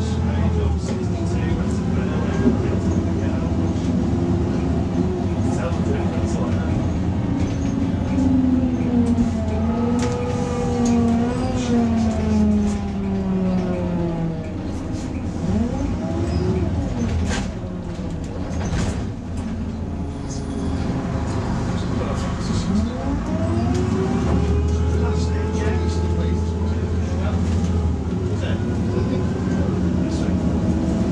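Volvo B6 LE bus's six-cylinder diesel engine heard from inside the passenger saloon as it drives, its note falling over several seconds near the middle and then rising again as the bus pulls away, with road noise and a few short rattles from the body.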